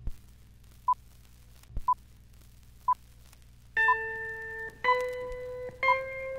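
Film-leader countdown sound effect: a short high beep once a second over a faint hum and a few crackles. From a little past halfway, each beep comes with a held musical chord about a second long, three in a row.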